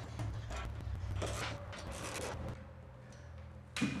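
Hard plastic seat plate being fitted onto a vinyl-covered foam cushion and handled on a workbench: a few short scraping, rubbing noises, then a sharp knock near the end.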